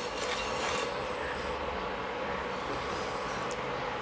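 A spatula stirring and scraping oil in a non-stick pan on an induction cooktop, strongest in about the first second, then a steady low hum and hiss from the pan and hob.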